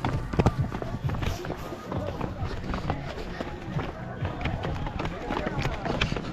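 Footsteps on a dirt footpath, a run of short irregular steps, with background music.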